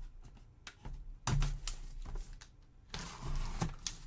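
A cardboard box being handled and opened by gloved hands: scattered clicks and knocks, a dull thump just over a second in, and a scraping rustle around three seconds in as the box's tape seal is broken.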